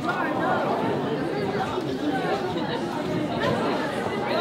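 Indistinct chatter of several people talking at once, overlapping with no clear words.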